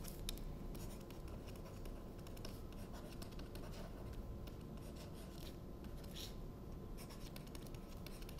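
Faint tapping and scratching of a stylus writing on a tablet screen, in short strokes, over a steady low hum.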